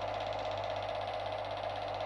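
A small machine running steadily: an even hum with a fast, fine rattle running through it.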